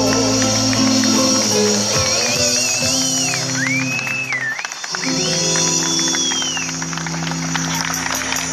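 Live band playing the instrumental close of a song: guitar over long held bass chords, with a high wavering, gliding melody line through the middle. Recorded on a phone from the crowd.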